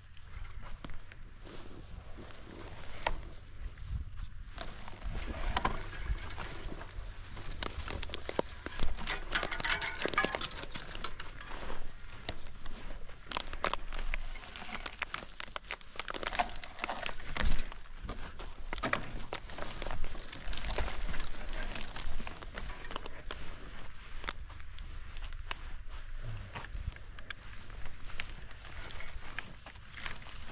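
Footsteps in sand and dry coastal scrub, with brush rustling: irregular crackles and crunches over a low, steady rumble.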